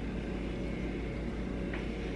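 A steady low hum of background noise with no distinct events.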